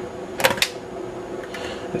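Two or three quick, light clicks about half a second in as the aluminium bottom case of a late 2008 MacBook is lifted and pops free of the body, with no clips holding it.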